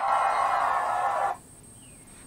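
Performance audio from a TV: a sustained many-toned sound of music and stage noise that cuts off suddenly about 1.3 seconds in as the video reaches its end, leaving faint room tone.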